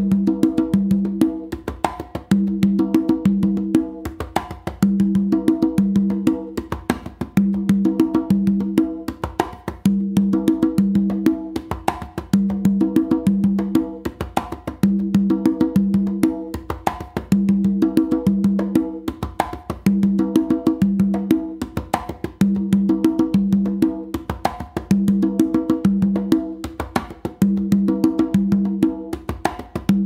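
Three congas played by hand in a salsa tumbao: sharp slaps and muffled strokes mixed with ringing open tones on a higher and a lower drum. The pattern repeats about every two and a half seconds.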